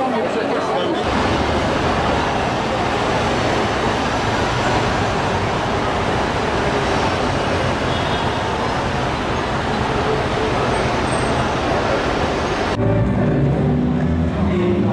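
Busy city street ambience: a steady, dense wash of traffic noise mixed with the chatter of a crowd. About a second in it cuts over from indoor market chatter, and shortly before the end it switches abruptly to a different recording.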